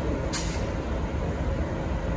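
Diesel engine of a V/Line Y class shunting locomotive running as the locomotive creeps along, with a brief sharp hiss about a third of a second in.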